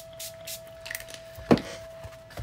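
Small pump spray bottle of gloss spray being pumped in a few short hissing squirts, then a single sharp knock about one and a half seconds in.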